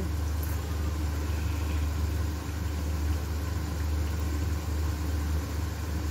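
Steady low hum under an even, faint hiss from a gas stove burner on high flame beneath a pan of chicken and cream.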